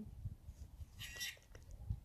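Faint low wind rumble on the microphone, with a brief crinkle of an MRE's foil-laminate food pouch being pulled open about a second in.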